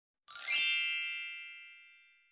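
A bright, shimmering chime sound effect for an animated logo: one ding that starts about a third of a second in and rings out, fading away over about a second and a half.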